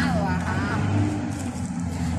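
Outdoor ambience in a lull between talk: a steady low rumble with faint voices in the background.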